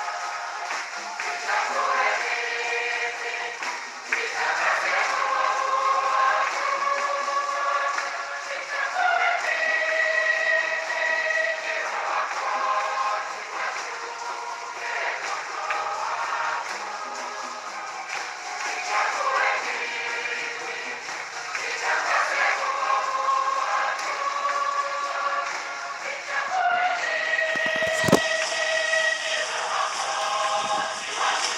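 Church choir singing a hymn for the entrance procession, phrase after phrase with short breaths between. A single thump comes near the end.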